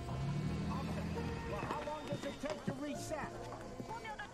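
Indistinct voices talking over soft background music with low held notes.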